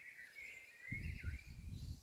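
A songbird singing faintly: a thin warbling run of notes over the first second or so. A low rumble joins about a second in.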